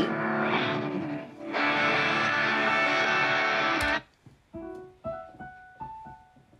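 An isolated electric guitar solo, extracted as a stem from a song, plays from an audio file and cuts off suddenly about four seconds in when it is paused. A few single notes are then picked out one at a time on an electric keyboard, trying to find the solo by ear.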